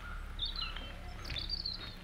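Songbirds chirping over a steady low rumble of outdoor background noise: a short run of high chirps about half a second in, and another in the second half.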